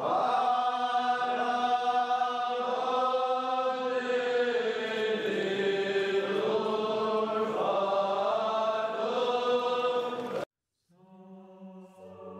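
Young Armenian boys chanting a prayer together in unison, slow and in long held notes. It cuts off abruptly near the end, and quieter steady held tones follow.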